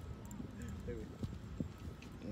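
Faint voices in the distance over a low, steady outdoor rumble, with two light clicks about a second and a half in.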